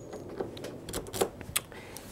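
A metal key clicking and scraping against the pins as it is worked out of a sticky keyed doorknob lock that grabs the key. A handful of separate sharp clicks, spread over low rustling.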